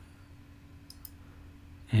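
A couple of faint computer mouse clicks about a second in, over a low steady hum.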